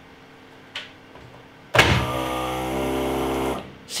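Krups The Sub Compact beer dispenser's small electric motor hums steadily for about two seconds, starting and stopping abruptly, after a light click under a second in.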